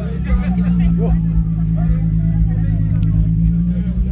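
Volkswagen Golf Mk5 R32's 3.2-litre VR6 engine idling with a steady low drone, with people talking in the background.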